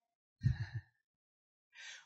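A man's short breathy vocal sound into a handheld microphone, like a sigh, about half a second in, and a faint breath near the end; otherwise the track is silent.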